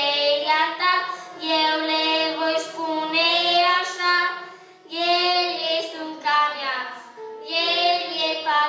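A boy singing solo into a handheld microphone, in sung phrases with a short break about five seconds in.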